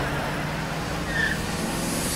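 A car driving, a steady even rush of noise with a low hum underneath.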